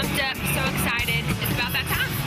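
A woman's voice speaking in short phrases over steady background music with a low hum.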